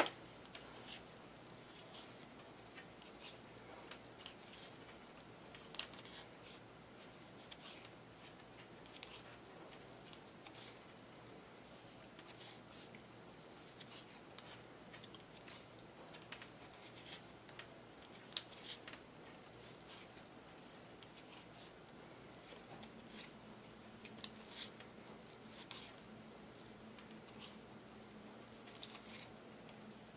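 Knitting needles clicking faintly and irregularly as stitches are worked off them, with light yarn rustle over quiet room tone. A faint low hum joins in for the last several seconds.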